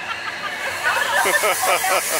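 A hiss, as of a fog or air-jet effect, builds from about halfway through, over several people's voices chattering.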